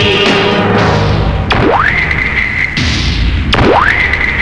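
Film background score: a low, rumbling music bed with two swooping tones that climb quickly and hold a high pitch, the first about a second and a half in, the second just before the end.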